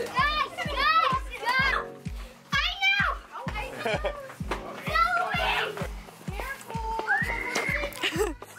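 A group of children shouting and squealing excitedly over music with a steady bass beat, about two and a half beats a second.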